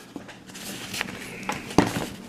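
Fabric tool bag being handled and shifted: a soft rustle with a few light clicks, then a sharp knock near the end.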